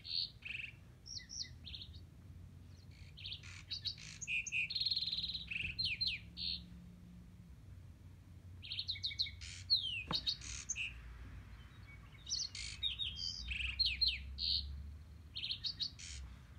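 Springtime birdsong: several small birds chirping in clusters of quick, high notes and short sweeps, with pauses between the bursts. A single sharp click comes about ten seconds in.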